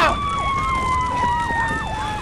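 Emergency-vehicle siren sounding: a long tone sinking slowly in pitch, with a quick repeating yelp under it, several sweeps a second.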